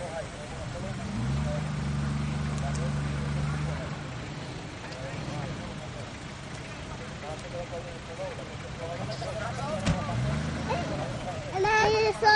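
Off-road SUV engine revving as it drives through mud: the revs rise about a second in and hold steady for a few seconds, then rise again briefly near the end.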